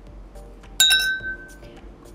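Chime of a subscribe-button animation sound effect: a sudden bright ding about a second in, ringing with a few clear high tones for most of a second, over soft background music.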